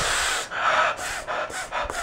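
A young man's excited, breathy gasps and exhalations, without voice: one long rush of breath, then a quick run of shorter breaths.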